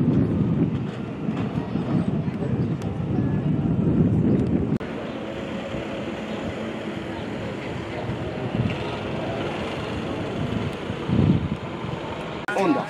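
Crowd chatter and voices, loud and rumbling for about the first five seconds. An abrupt change then leaves a steadier, quieter murmur.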